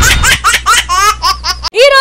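A single voice laughing in a quick run of short rising 'ha' bursts over a low steady background, cut off abruptly near the end.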